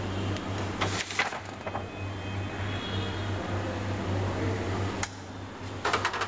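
Sheets of paper rustling as a stack of printed pages is handled at the photocopier's document feeder, with a few short strokes about a second in, over a steady low electrical hum.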